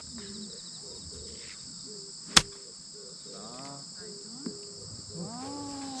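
A golf iron striking the ball once, a sharp crack about two and a half seconds in, hitting an approach shot to the green. Under it a steady high chorus of crickets.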